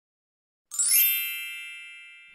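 A single bright chime sound effect struck about two-thirds of a second in, ringing on with several high tones and fading slowly.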